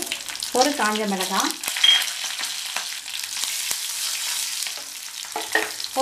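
Curry leaves and green chillies sizzling in hot oil in a stainless steel kadhai, the tempering for onion sambar. A steady frying hiss runs through it, with light clicks from a wooden spatula stirring against the pan.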